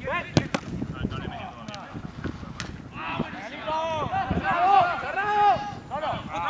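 A football struck sharply on artificial turf about half a second in, followed by a few lighter ball strikes. From about three seconds in, players shout and call to each other during the drill.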